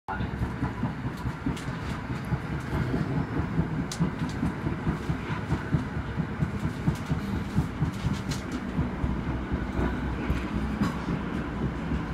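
Southeastern Class 465 Networker electric train running on the rails, a steady low rumble with scattered sharp clicks.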